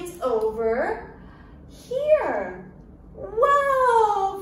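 A woman's playful, sing-song wordless vocal sounds with swooping pitch, three in all. The first rises and falls, a falling glide comes about two seconds in, and a longer falling call comes near the end.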